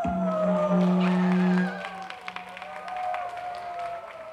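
The final held note of a pop song's backing track ends under two seconds in, while the audience claps and cheers.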